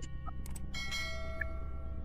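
Subscribe-button animation sound effect: a couple of short clicks about half a second in, then a bell ringing.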